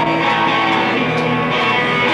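Live band playing the opening of a song, led by electric guitar with sustained notes and little low end, recorded on a Wollensak reel-to-reel tape machine.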